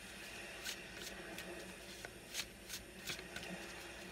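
A tarot deck being shuffled by hand: quiet rustling with a few soft card clicks at irregular moments.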